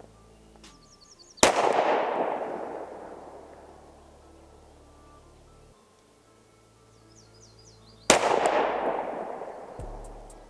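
Two single shots from a 9mm Sig Sauer P365XL pistol, about six and a half seconds apart. Each is a sharp crack followed by a long echo fading over a couple of seconds. These are slow, deliberate rested shots in a zeroing group.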